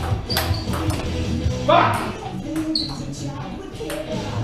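Table tennis ball struck twice, sharp clicks about a second in and near the end, over background music. A short rising shout near the middle is the loudest sound.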